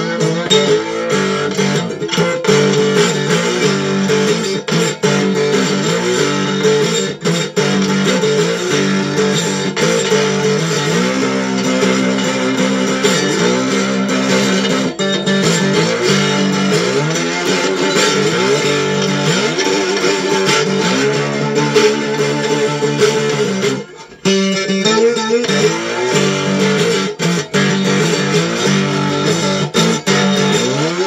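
Electric gas-can guitar with a piezo pickup under its bridge, played through a small ZT Lunchbox amp: a tune picked and strummed, with notes bending and sliding in pitch from its spoon whammy bar. The playing stops briefly about three-quarters of the way through, then carries on.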